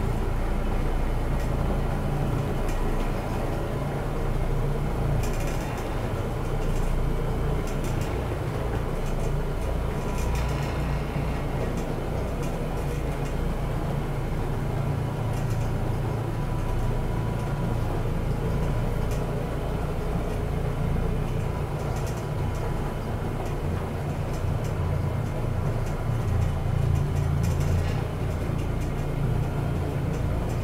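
Challenger OP orbital floor machine running steadily, its motor humming low as it orbits a microfiber bonnet pad over carpet, with a few faint ticks along the way.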